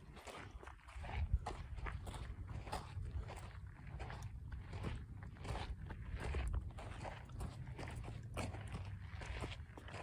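Footsteps crunching on a dry dirt and gravel trail at a steady walking pace, about two steps a second, over a low steady rumble.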